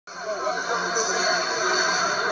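Music and indistinct voices played back from a computer's speakers and picked up again by a phone filming the screen.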